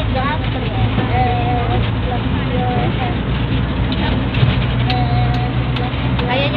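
Steady low engine drone and road noise heard from inside the cabin of a moving passenger vehicle, with voices talking over it.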